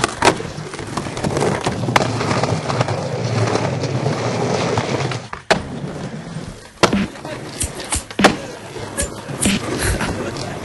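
Skateboard wheels rolling steadily over the ground, broken by sharp clacks of the board hitting the ground as tricks are done. The rolling fades after about five seconds, leaving a string of separate clacks.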